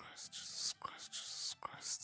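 A man whispering under his breath close to the microphone: several short breathy bursts with brief gaps between them.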